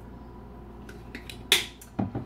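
Plastic kitchenware being handled: a few light clicks, then one sharp plastic click about one and a half seconds in, as a shaker cup is handled at a blender jar.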